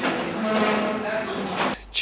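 Live praise singing in a crowded church hall: voices holding long notes over a dense wash of crowd sound, cut off abruptly near the end.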